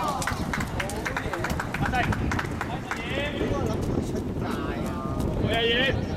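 Players' footsteps slapping and splashing on a rain-wet outdoor futsal court, a quick run of sharp steps, with shouted voices about halfway through and near the end.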